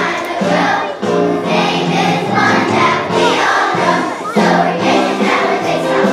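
A children's choir singing a song.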